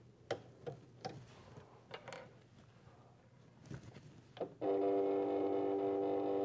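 Light plastic clicks as a pen is fitted and clamped into a digital craft cutter's tool holder. About four and a half seconds in, a steady whine of several held tones starts and carries on.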